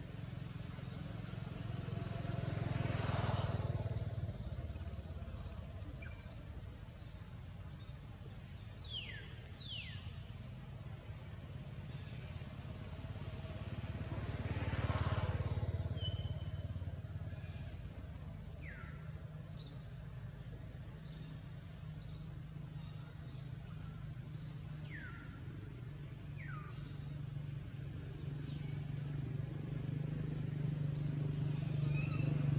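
Motor vehicles passing on a nearby road: engine and tyre noise swells and fades twice, and a steady low engine hum builds toward the end. A few short, downward-sliding chirps sound over it.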